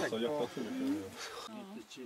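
Background voices of several people talking, not clearly worded.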